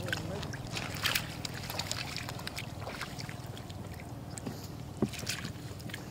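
Shallow floodwater splashing and sloshing around rubber boots as frogs are handled and put into a wicker basket, with scattered small splashes and clicks over a steady low rumble. The sharpest splash comes about five seconds in.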